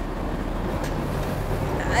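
Low-floor city bus idling at the stop: a steady low engine rumble under street noise.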